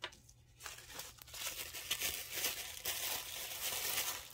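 Tissue paper crinkling and rustling as it is handled and pulled about, starting about half a second in.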